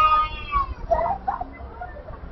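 A toddler crying and screaming in pain after being cut: one long high wail that tails off under a second in, followed by a few shorter cries.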